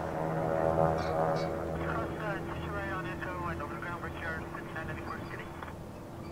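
Boeing 787's GE GEnx turbofans running at low power as the airliner rolls slowly along the runway: a steady hum with a whine that is loudest about a second in.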